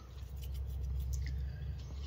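Faint scraping of a small stick spreading two-part epoxy paste onto wooden knife-handle scales, over a low steady hum.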